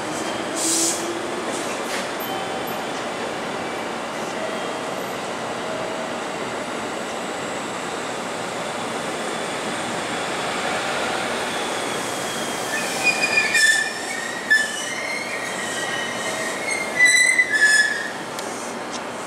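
JR Kyushu 787-series electric train rolling slowly past along a station platform with a steady rumble of wheels on rail. In the last five seconds, high-pitched wheel squeals sound in short bursts.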